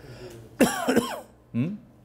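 A person clearing their throat: a rough, loud throat-clear about half a second in, followed by a second, shorter one about a second later.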